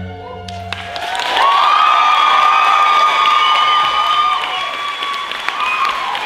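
The last note of the routine's music dies away within the first half second. An audience then applauds and cheers, with long, high whoops over the clapping, loudest from about a second and a half in.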